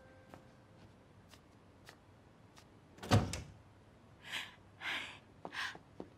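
A door shutting with a single heavy thud about halfway through, then three short soft noises about half a second apart.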